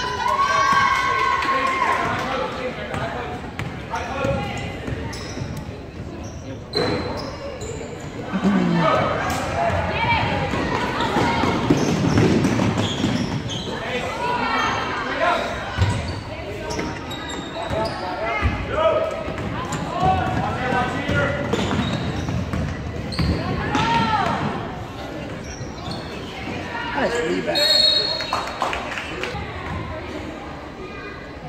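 A basketball being dribbled and bounced on a hardwood gym floor during a game, with players' and spectators' shouts and calls echoing in the large gym.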